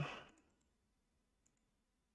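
Near silence broken by two faint computer-mouse clicks, about a second apart.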